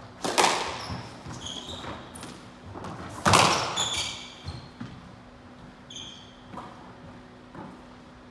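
Squash ball hit hard with racquets and off the court walls: two loud cracks about three seconds apart, each ringing in the enclosed court, then a few lighter knocks. Short high squeaks of court shoes on the wooden floor come between the hits.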